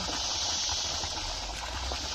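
Steady outdoor hiss with a low rumble underneath and no distinct events.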